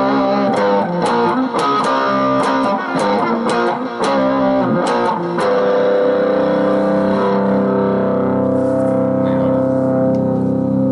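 Dean Vendetta electric guitar played with light distortion: a quick picked riff, then about five and a half seconds in a chord left to ring out and sustain.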